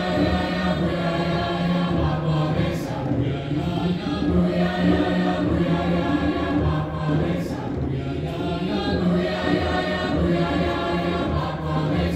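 Large combined choir of many voices singing together in held chords, phrase after phrase, with a few brief breaks between phrases.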